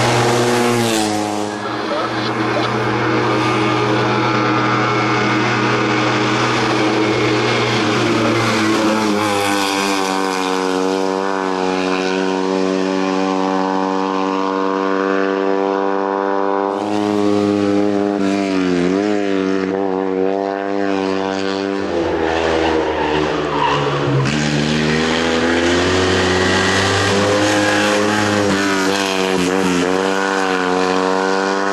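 Fiat 126's air-cooled two-cylinder engine driven hard in a race run, its note climbing under acceleration and dropping at each lift-off and gear change over and over. The sound jumps abruptly a few times.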